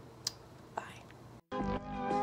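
A lip smack from a blown kiss about a quarter second in, with a faint breath after it; then, after a brief dead gap, outro music with plucked strings starts about one and a half seconds in and is the loudest thing.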